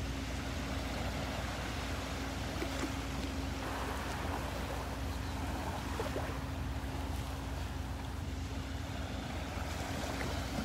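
Gentle surf washing on a calm Gulf beach with wind on the microphone, a steady even rush of noise. A faint steady low hum runs underneath throughout.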